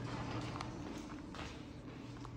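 A few soft footsteps on a polished hard lobby floor over a steady low hum.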